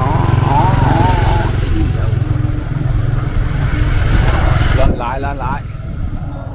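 Strong wind buffeting the microphone: a steady low rumble that eases slightly about five seconds in.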